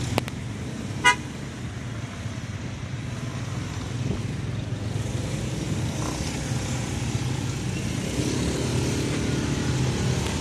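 Motorcycle engine running in stop-and-go city traffic, with one short horn toot about a second in. The engine sound rises a little near the end as the bike moves off.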